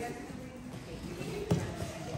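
Quiet room sound of barefoot children moving about on dojo mats, with faint voices and a single sharp thump about a second and a half in.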